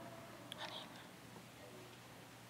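Near silence: quiet church room tone with a faint steady hum and a brief soft hiss about half a second in.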